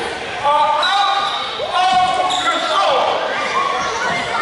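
Voices calling out and shouting in an echoing school gymnasium, with some held, drawn-out calls between about one and three seconds in.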